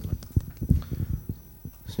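A series of soft, irregular knocks and thumps, close to the table microphones.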